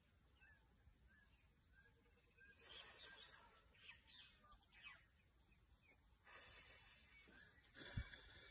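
Near-quiet outdoor ambience in which a small bird repeats a short chirp about every two-thirds of a second. Soft hissing noise swells up twice in the middle, and a single sharp knock comes at the very end.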